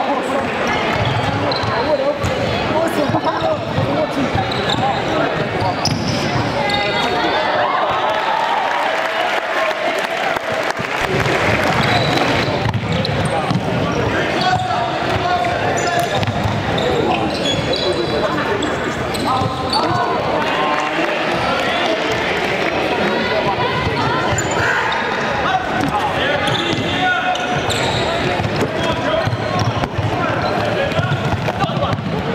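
Footfalls and sneaker squeaks of players running on a hardwood gym floor, under steady shouting and chatter from players and spectators in a large sports hall.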